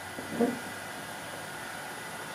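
Quiet room tone: a steady hiss, with one brief faint sound about half a second in.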